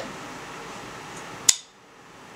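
A single sharp snip of scissors closing on a strand of yarn about one and a half seconds in, over steady room hiss.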